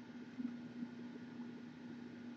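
Quiet room tone: a steady low electrical hum under faint hiss, with a couple of faint soft ticks about half a second and a second in.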